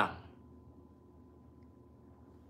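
A man's spoken word trails off at the very start, then near silence: faint room tone with a low hum and a very faint steady high tone.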